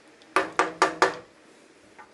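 Wooden spoon tapped four times in quick succession on the rim of a metal frying pan to shake off sauce, each knock with a short metallic ring.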